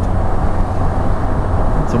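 Steady wind rush and engine drone of a Can-Am Spyder RT-S roadster cruising along a road, with wind on the microphone.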